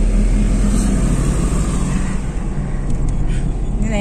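Steady engine and road noise inside a moving car's cabin, its low engine note dropping a little about halfway through.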